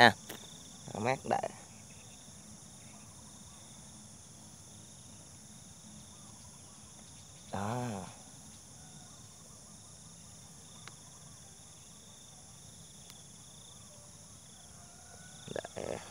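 Steady high-pitched chorus of insects such as crickets in grassland, holding a few unchanging pitches throughout, with a man's voice briefly heard twice, about a second in and about halfway through.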